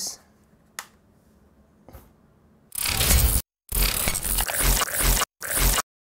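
Harsh, crackling glitch-style sound effect from a channel intro, starting loud about three seconds in and chopped by several sudden cuts to dead silence.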